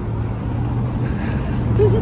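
City road traffic on the adjacent avenue: a steady low hum of passing cars.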